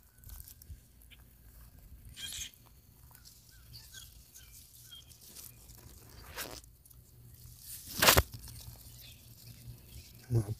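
Pear tree leaves and twigs rustling and brushing close against the microphone as the branches are handled. It comes as soft, scattered scrapes, with a louder brush about eight seconds in.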